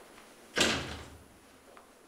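An office door shutting once: a single sudden knock about half a second in that dies away over about half a second.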